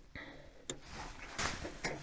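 Light handling sounds of hands working among the wires and battery inside a gate operator's control cabinet: a sharp click about two-thirds of a second in, a brief rustle, and another click near the end.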